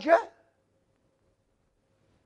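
The end of a man's spoken word ("Elijah") in the first half second, then near silence.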